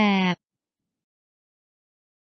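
A synthetic narration voice holds its last syllable at a flat pitch for about a third of a second, then cuts off into dead silence.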